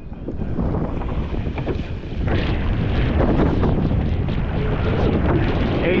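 Wind buffeting the microphone over water rushing and splashing around a surf boat's sweep oar as the crew rows. It gets louder over the first couple of seconds.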